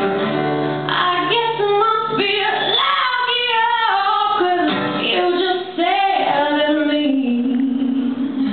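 A woman singing a pop-folk song live, accompanied by acoustic guitar. Her voice glides between held notes over sustained guitar chords.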